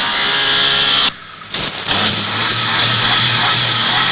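Car engine revving with a loud rushing hiss of tyres on a dirt road. It dips briefly about a second in, then carries on with a steady low hum under the hiss.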